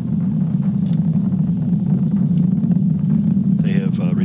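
Falcon Heavy rocket's 27 Merlin engines in ascent shortly after going supersonic, heard as a steady low rumble without a break.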